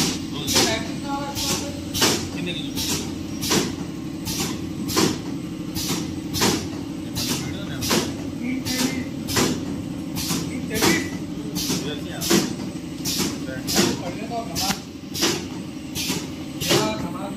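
Packaging machine running printed pouch film off a roll: a steady low hum with a sharp, regular clack about every 0.7 seconds.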